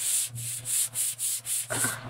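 Hands rubbing a sticky self-adhesive vinyl silk-screen stencil back and forth against a fabric cloth, a dry hissing swish about four strokes a second. The rubbing coats the adhesive with lint so it won't grab the glass too hard.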